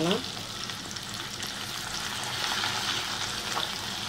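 Chopped small onions sizzling in hot oil in a clay pot, stirred with a wooden spatula: a steady frying hiss that swells a little midway.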